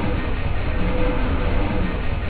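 Live-coded electronic music built from chopped, looped samples: a dense, noisy wash over a heavy low rumble, with a short held tone that returns about every second and three-quarters.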